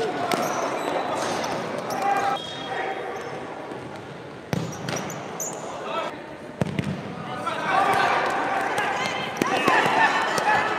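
Indoor futsal play in an echoing sports hall: players' shoes squeaking on the court floor, the ball struck with a few sharp kicks, and players and onlookers calling out, louder near the end.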